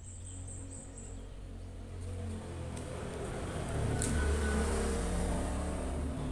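A motor vehicle passing outside: a low engine rumble that grows louder toward the middle and then eases off. A sharp click about four seconds in.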